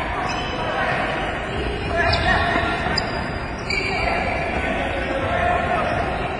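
Volleyballs being set and passed by players, bouncing off hands and the hardwood court, with quick footsteps and players' voices in the background of a gym.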